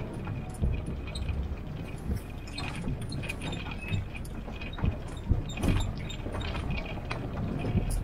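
Open WWII-style jeep driving slowly over a rough dirt forest track: a low engine rumble with frequent knocks and rattles from the body and loose gear jolting over bumps.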